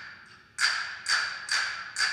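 Hand-held castanets clacking alone, four sharp clicks about half a second apart, the first about half a second in, each with a short ringing tail in the hall.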